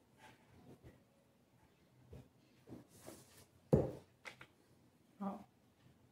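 Faint rustling and small taps of a paper cutout being glued and pressed onto a sheet of paper on a table, with one louder knock about two-thirds of the way in as the glue bottle is set down on the table. A brief murmur from a woman comes near the end.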